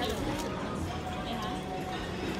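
Dining-room ambience: indistinct chatter of other diners with faint background music.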